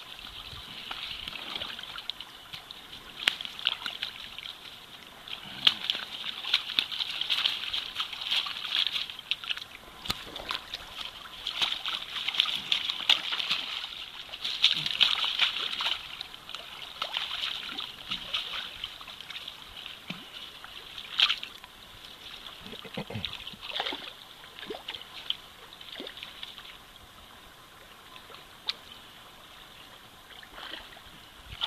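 A sockeye salmon thrashing in shallow creek water while held by hand, splashing and sloshing in irregular spells with sharp slaps. It is busiest in the middle and quieter near the end.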